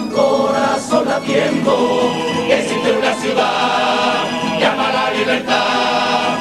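A Cádiz carnival coro, a large male choir, singing a tango in chorus, with some notes held long.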